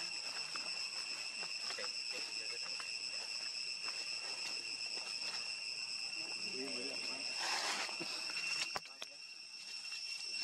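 Outdoor insect chorus: a steady, high-pitched trill with several constant tones, over light scattered clicks and rustling. A short burst of rustling comes about seven and a half seconds in, and a sharp click comes near the end.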